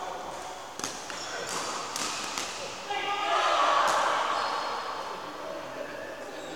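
Badminton rackets striking shuttlecocks, about five sharp hits in the first three seconds, followed by a louder voice-like sound that swells around the middle and fades.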